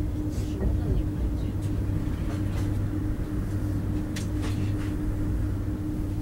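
Passenger train running, heard from inside the carriage: a steady low rumble with a constant hum and scattered light clicks and knocks.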